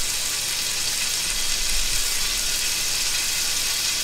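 A thin, heavily marbled slice of Sendai beef tomosankaku sizzling steadily on a hot perforated yakiniku grill plate: an even, hissing sizzle with no breaks.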